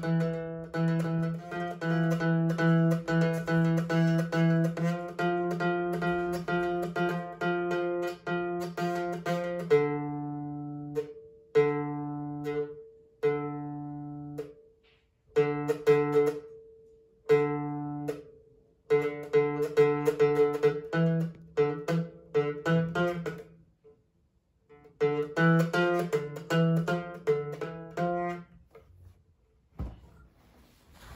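A child playing a small acoustic guitar: a quick, even pattern of repeated chords for about ten seconds, then slower single strums left to ring out with short pauses between. After a brief pause he picks up the quick pattern again, then stops shortly before the end.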